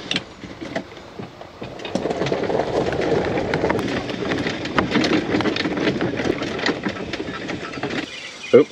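Golf cart being driven over lawn, its body rattling with many small clicks over the noise of the ride, louder from about two seconds in.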